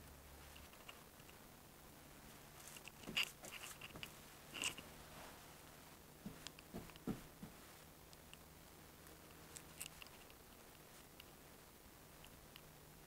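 Paintbrush stroking and dabbing liquid waterproofing membrane onto a cement-board wall around a shower valve: faint, with a few soft scratchy brush strokes, the loudest about three and four and a half seconds in.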